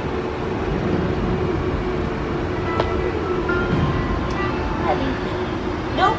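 Steady vehicle rumble with a constant low hum, and faint brief tones coming and going over it.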